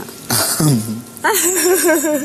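A woman's voice: a short vocal sound sliding down in pitch about half a second in, then conversational speech in Malayalam.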